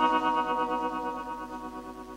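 Electric guitar chord held and ringing out through chorus and echo effects, fading steadily as it dies away.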